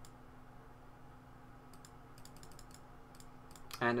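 A quick run of about a dozen sharp computer clicks, starting a little before halfway through, as the game record is stepped forward move by move, over a faint steady electrical hum.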